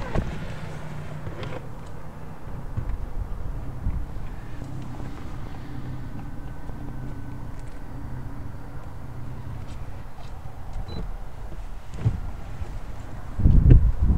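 Electric motor of a Genesis GV80's power-folding third-row seat, a steady low whir as the seatback folds down, stopping about ten seconds in. A thump comes near the end.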